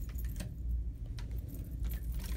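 A steady low rumble with a few faint, light clicks spread through it.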